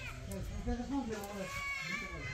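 People talking, with a higher, wavering voice in the second half.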